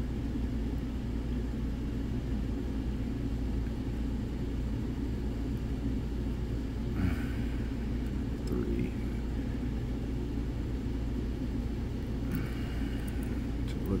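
Steady low mechanical hum throughout, with a few faint scrapes and clicks of a steel pick working the pins inside a lock cylinder.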